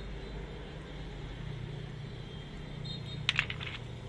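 Rough agate stones clicking against one another as a hand picks through a pile: a quick cluster of clicks about three seconds in, over a steady low background hum.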